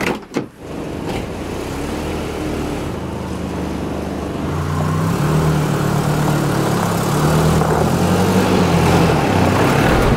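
A car door lock and latch clicking open, then an SUV's engine running as the vehicle moves toward the camera over gravel. The engine grows louder from about halfway through and is loudest near the end.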